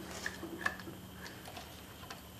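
A few faint, short metallic clicks from needle-nose pliers and a screwdriver working a valve in the block of a Briggs & Stratton flathead engine, as the carbon-stuck valve is levered up by its spring.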